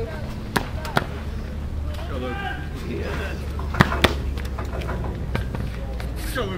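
Faint background voices over a steady low hum, with a few sharp clicks or knocks, the loudest pair about four seconds in.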